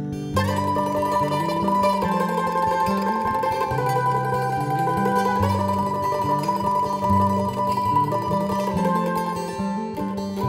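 Mandolin picking a melody with long held notes over strummed acoustic guitar chords, the mandolin coming in about half a second in. No singing.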